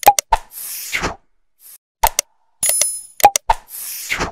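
Animated like-and-subscribe sound effects: quick clicks and pops, a whoosh about half a second in, a bright bell-like chime partway through, and another whoosh at the end.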